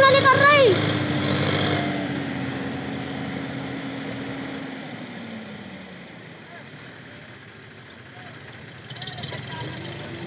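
Tractor diesel engine running under load, then slowing: its pitch sinks and it grows steadily quieter over the first five seconds. A loud shout comes right at the start.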